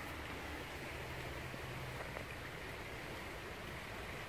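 Faint, steady outdoor background hiss with no distinct event.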